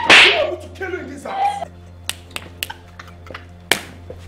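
A strap lashing a person: a loud blow with a cry at the start, then a quick series of about six sharp cracks, the last near the end the loudest, with a woman crying out between them. Faint background music runs underneath.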